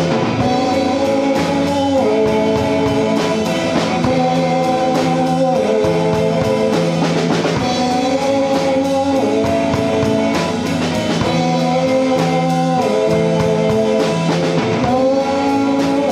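A rock band playing live: electric bass, electric guitar and drum kit with a woman singing, loud and unbroken, held chords changing every second or two over a steady drumbeat.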